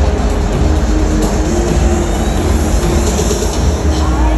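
Stadium ambience: music over the public-address system mixed with the noise of a large crowd, with a heavy low rumble throughout.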